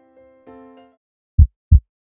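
Soft keyboard notes of an intro jingle fade out, then a heartbeat sound effect comes in near the end: one loud, low double thump, lub-dub.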